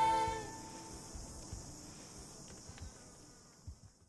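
A held sung chord of the soundtrack music dies away in the first half second. It leaves a steady, high-pitched insect chorus with a few faint clicks, which fades out toward the end.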